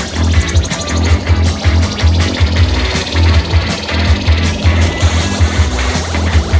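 Rock music playing: a band with a loud, pulsing bass line and drums.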